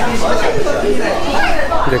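Indistinct chatter of several people talking, with a man's voice starting a word at the very end.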